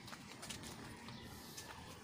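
Faint footsteps on dry garden soil and leaves: a few soft, scattered clicks and light rustling.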